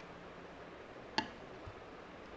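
A single sharp click a little over a second in, followed about half a second later by a soft knock: small stationery items being handled and set down on a desk while packing.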